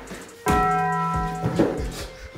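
A bell struck once about half a second in, its several ringing tones fading over about a second. A few dull low thumps sound under it.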